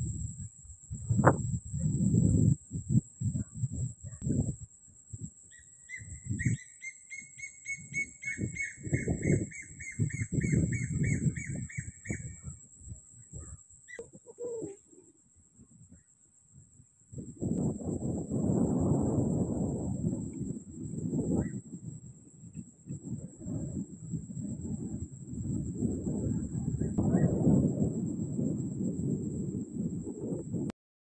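Night outdoor ambience: wind buffeting the microphone in uneven low rumbles, over a steady high-pitched hum like an insect chorus. From about six to twelve seconds in, a rapid trilling animal call repeats, and the wind drops away for a few seconds in the middle.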